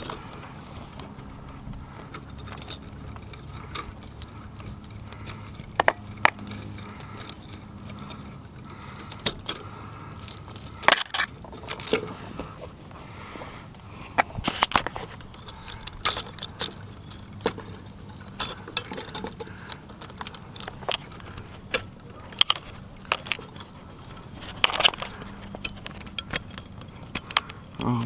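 Irregular sharp clicks and light metallic clinks from hands working a security light's wiring: wires, a twist-on wire nut and the fixture's metal parts. A faint steady low hum runs underneath.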